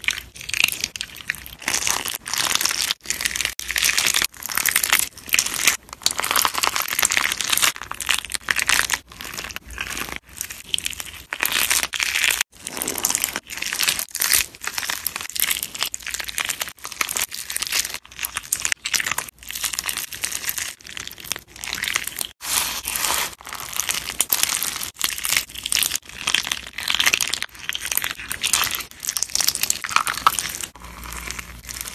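Hands squeezing and kneading crunchy slime packed with beads and polymer clay fruit slices: dense, irregular crunching and crackling from press after press, with a few brief breaks.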